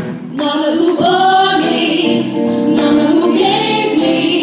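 A group of female voices singing together over a live band with a drum kit, the voices coming in about half a second in with long held notes and drum strokes beneath.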